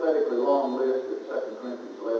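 Speech only: a man's voice preaching a sermon.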